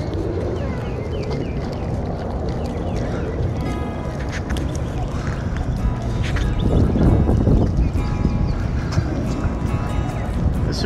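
Gusting wind buffeting the microphone: a dense, rumbling roar that swells heavier about seven seconds in. Faint music sits underneath it.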